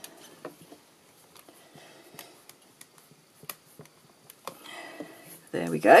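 A few faint light taps and clicks, spaced a second or so apart, from rubber stamping tools being handled and pressed on a hinged stamping platform, then a brief spoken word near the end.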